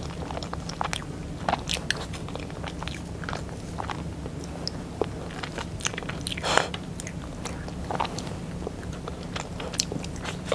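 Close-miked eating of soft chocolate cake: chewing and wet mouth clicks, with scattered short clicks and scrapes as a spoon works cake off a plastic tray. A low steady hum runs underneath.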